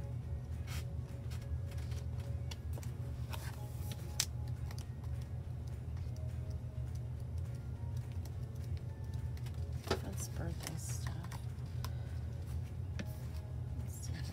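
Paper pages of a sticker book being flipped and handled, with scattered rustles and a few sharper paper snaps and taps, the sharpest about four seconds in and near ten seconds.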